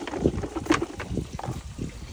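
Irregular sloshing and gurgling of water in a plastic bucket as the shop vac part is worked in the soapy water, over a low wind rumble on the microphone.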